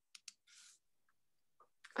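Two faint clicks from a computer keyboard or mouse near the start, followed by a brief soft rustle and a couple of tiny ticks.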